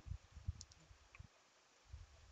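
Very faint handling noise of a phone being touched: a few soft clicks, about half a second in and again a little over a second in, and soft low thumps, over near-silent room tone.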